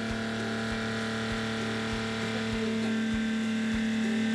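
Watermaker pumps running: the electric-motor-driven high-pressure plunger pump together with the low-pressure feed pump, freshly started and not yet brought up to pressure. It makes a steady electric hum with a faint low pulse a little under twice a second.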